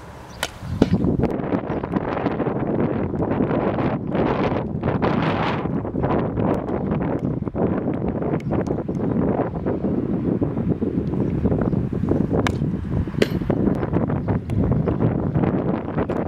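Wind buffeting the microphone, a steady heavy rumble that comes up about a second in and runs on. A few sharp clicks of a hockey stick striking the ball cut through it, two of them close together late on.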